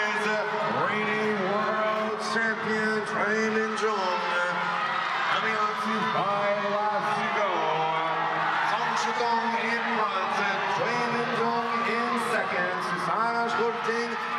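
A man's broadcast commentary voice speaking throughout, over steady arena background noise.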